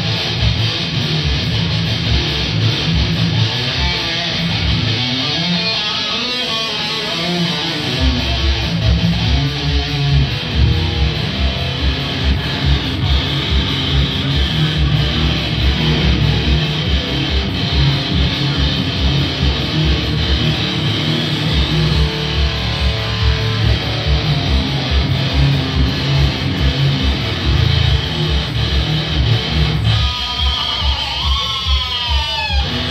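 Heavy metal band playing live: electric guitar over drums, with a fast, driving kick-drum beat coming in about eight seconds in.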